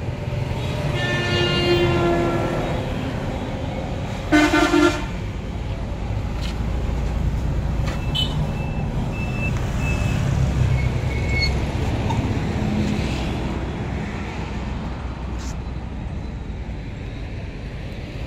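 Shibaura D28F tractor's four-cylinder diesel engine idling as a steady low rumble. A horn honks twice over it: a longer toot about a second in, and a short, louder one about four seconds in.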